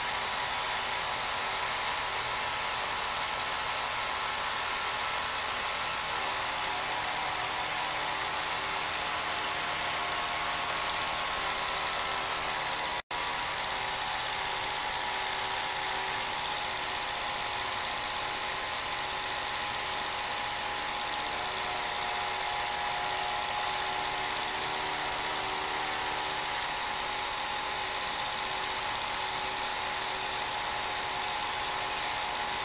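Movie projector running with a steady mechanical clatter and hum, with a brief dropout about thirteen seconds in.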